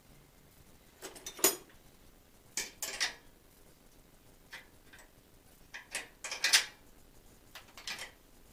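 Metallic clinks and rattles from a bicycle's rear wheel and hub parts being handled and fitted in a repair stand. They come in short clusters about a second in, around three seconds in and between six and seven seconds in, with the sharpest knocks near a second and a half and near six and a half seconds.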